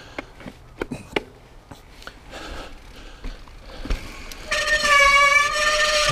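Mountain bike rattling and knocking over a rough dirt trail. About four and a half seconds in, a loud, steady honking squeal starts and holds, typical of damp disc brakes howling under braking.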